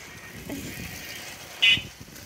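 Inline skate wheels rolling with a low rumble on rough asphalt. A short, high ringing sound cuts in about one and a half seconds in and is the loudest thing heard.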